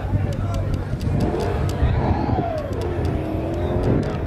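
A car engine revving up and falling back, then holding a steadier note, over a continuous low rumble, with voices in the background.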